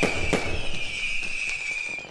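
Fireworks sound effect: a bang at the start and a second one just after, then crackling that fades away under a steady high tone.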